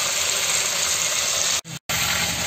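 Boneless chicken pieces frying in hot oil in an iron kadai, a steady sizzling hiss. The sound drops out for a moment near the end.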